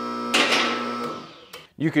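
Two-post car lift's electric hydraulic pump unit running with a steady hum, then stopping a little past a second in. About a third of a second in, the arm safety locks clack and ring out; the two sides are not even, the sign of unbalanced balance cables that need adjusting.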